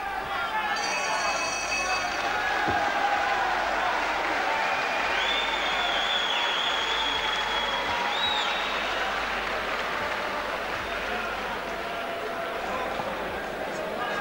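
Boxing arena crowd cheering and applauding, with whistles about halfway through. A brief ringing tone sounds about a second in.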